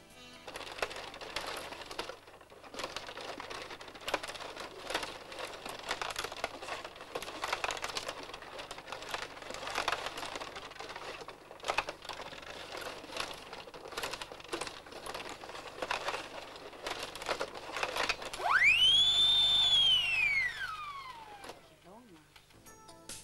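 Irregular clicking and clattering of a rod table hockey game: plastic players, rods and puck knocking on the plastic table. About 18 seconds in, a loud whistling tone sweeps up, holds briefly, then glides down over about three seconds.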